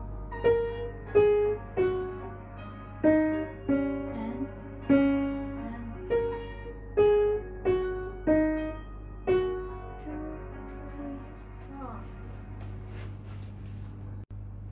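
A simple beginner's piano piece played slowly and evenly, mostly one note at a time at about one to two notes a second. The last notes are left to ring and fade from about ten seconds in.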